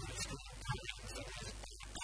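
A man's voice speaking into a handheld microphone, garbled and chopped up by heavy audio distortion, over a steady hiss; the speech breaks off near the end, leaving only the hiss.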